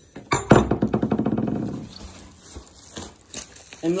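A metal car hood latch set down with a sharp clank about half a second in, followed by more than a second of metallic rattling. Softer handling and rustling of packaging follow.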